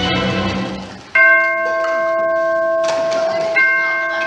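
Music fades out, then a deep bell chime strikes twice, about two and a half seconds apart, each stroke ringing on: a clock striking, played as a stage sound effect.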